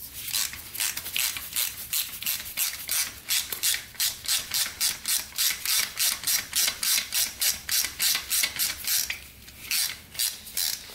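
Socket ratchet wrench clicking steadily, about four clicks a second, as a bolt is backed out; the clicking stops about nine seconds in.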